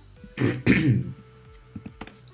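A man clearing his throat once, about half a second in, with a couple of computer keyboard key clicks near the end over faint background music.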